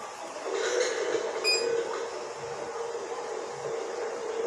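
Dental suction tip running in the patient's mouth: a steady hiss over a low hum that sets in about half a second in. A brief high-pitched ping sounds about a second and a half in.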